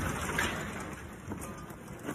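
Dirt and debris pattering and falling back to earth just after an inert practice bomb's ground impact, the noise fading steadily, with a few scattered sharp hits of clods landing.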